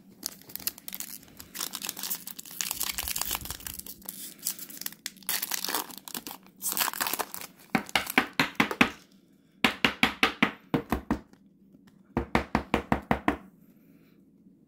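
A baseball card pack's wrapper crinkling and tearing as it is opened. Then come three quick runs of sharp, evenly spaced clicks, about five or six a second, from the cards being flicked through.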